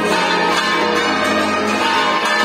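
Church bells pealing continuously.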